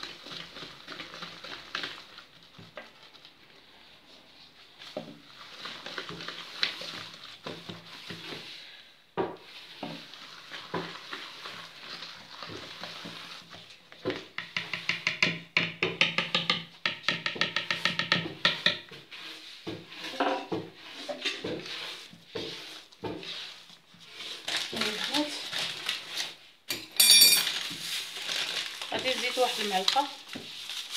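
A wire whisk stirring a stiff semolina dough in a plastic bowl, with a run of quick, even strokes at about four a second in the middle. A brief, loud, high-pitched sound comes near the end.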